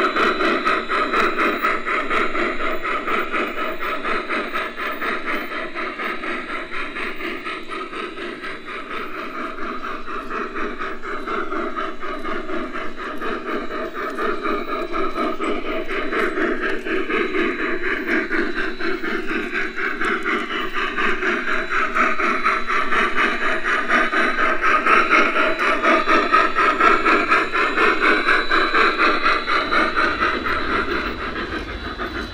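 Live-steam F-scale model of Rio Grande steam locomotive No. 490 running along the track with a rapid chuffing exhaust and steam hiss, its wheels rolling on the rails. It gets louder in the last few seconds as it draws near.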